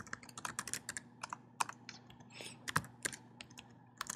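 Typing on a computer keyboard: quick, irregular keystrokes in short runs as code is entered.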